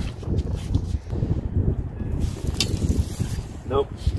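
Wind buffeting the microphone, an uneven low rumble that rises and falls in gusts, with a few faint clicks.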